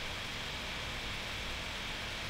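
Steady hiss of the recording's background noise (room tone and microphone hiss), with no other sound standing out.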